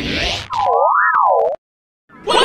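A cartoon 'boing' sound effect: a warbling tone that wobbles up and down in pitch for about a second. It follows a brief burst of hiss and cuts off suddenly into silence.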